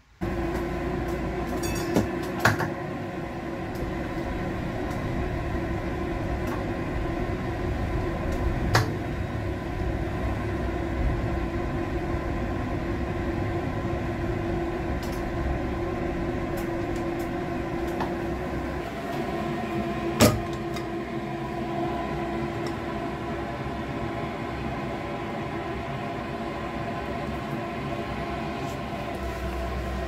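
Electric tram heard from inside the driver's cab, a steady hum with a few short clicks.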